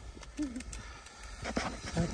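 Footsteps on a concrete walkway, a few sharp steps near the end, with one short faint vocal sound about half a second in.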